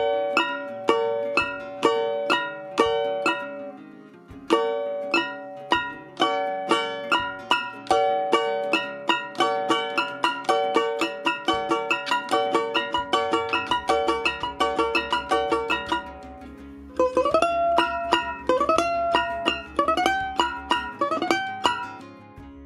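Three-string domra plucked with a pick: a rhythmic run of short, ringing notes that quickens midway. Over the last five seconds several notes slide upward in pitch.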